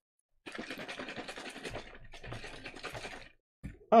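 G Fuel shaker cup being shaken to mix powder and water: a rapid, steady rattling that starts about half a second in and stops shortly before the end.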